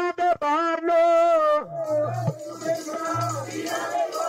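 Sikh devotional singing: a voice sings and holds a long, wavering note, then instrumental accompaniment with a low, repeated bass comes in about two seconds in.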